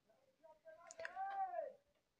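A faint, short high-pitched call about a second in, rising and then falling in pitch, with a soft click just before it.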